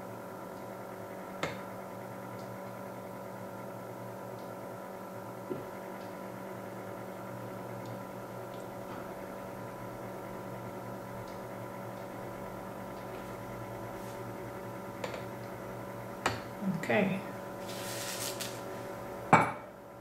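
Steady electric hum from the plugged-in, running egg incubator, with a few light clicks of glass and plastic. A brief hiss and a sharper knock come near the end.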